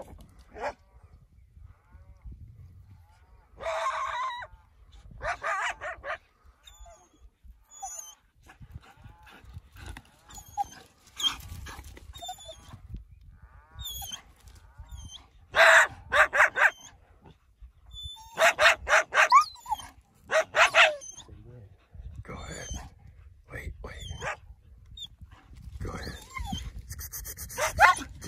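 Dogs barking in repeated runs of several quick, loud barks, the loudest runs past the middle.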